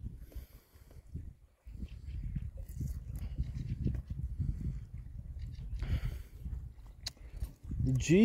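A man drinking beer from a glass bottle makes faint clicks and gulps at the start. From about two seconds in, an uneven low rumble of wind buffeting the microphone takes over.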